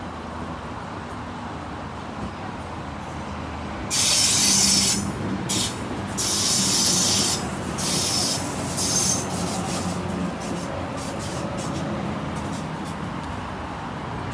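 Double-deck electric suburban train arriving at the platform with a steady low rumble. From about four seconds in, a run of loud hisses in short bursts lasts some five seconds, typical of the brakes letting out air as the train comes in.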